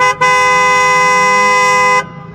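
Vehicle horn sounding: a brief toot, then one long steady two-note blast held for nearly two seconds.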